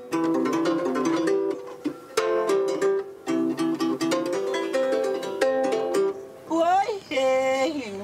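A plucked string instrument playing a quick, repeating melodic figure of short, sharply picked notes. Near the end a voice slides upward and holds a note.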